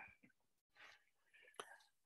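Near silence: room tone, with a single faint click near the end.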